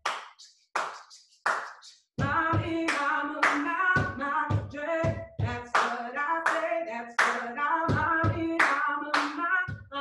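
A woman singing a cappella while her heeled shoes strike a hollow wooden tarima in a percussive dance rhythm. It opens with a few sparse strikes, then the singing comes in about two seconds in, with the strikes running on under it.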